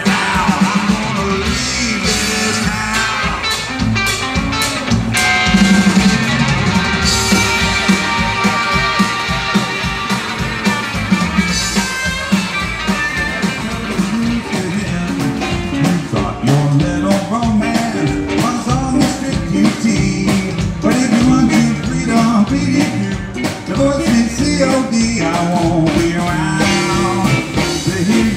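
Live rockabilly band playing an instrumental break: a hollow-body electric guitar takes the lead over upright bass and drums keeping a steady beat.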